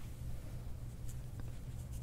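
Faint scratching of a comb's teeth dragged through hair against the scalp, over a low steady room hum.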